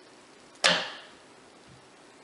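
Wire soap cutter's wooden arm brought down through a log of cold process soap, ending in one sharp clack as it strikes the cutter's frame, dying away within half a second.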